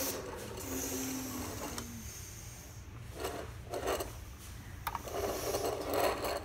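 Die-cast toy front-loader garbage truck being pushed and scraping on a wooden tabletop, its lifting forks and a plastic toy dumpster rattling in several short bursts in the second half. A low steady hum runs through the first two seconds.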